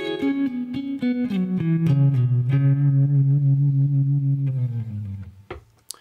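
Harmony Jupiter Thinline electric guitar played through an amp: a short falling run of picked single notes that lands on a low note, held and ringing until it fades out about five seconds in.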